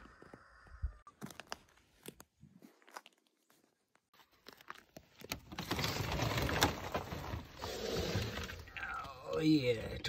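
Stiff, frozen plastic sheeting crinkling and crackling as it is pulled back off a cold frame, loud and continuous for a few seconds in the second half, after a few faint clicks and crunches.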